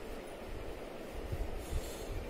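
A steady low rumble of background noise with irregular low thumps, and a brief faint scratch of a marker stroking across a whiteboard near the end.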